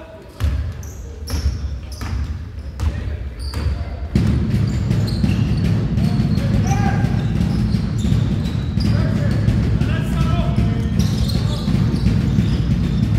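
A basketball dribbled on a hardwood gym floor in a steady rhythm of bounces, with sneakers squeaking as players move. About four seconds in, a loud, steady low rumble sets in beneath the play.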